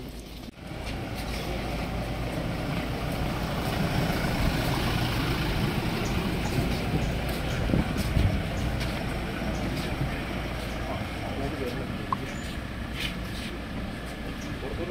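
A Toyota Innova Crysta running at low speed as it drives slowly past, with a steady low rumble, and people talking around it.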